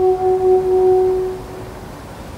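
Solo euphonium holding one long sustained note that fades away about a second and a half in, followed by a short pause.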